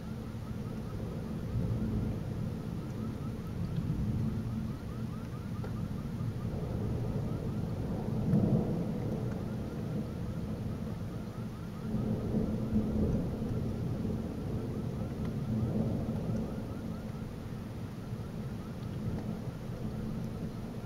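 Rolling thunder from a supercell thunderstorm, rumbling in several long swells over steady rain, the loudest peal about eight seconds in.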